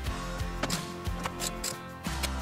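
Background music with a few irregular clicks of a Pittsburgh socket ratchet tightening bracket bolts into a stereo head unit.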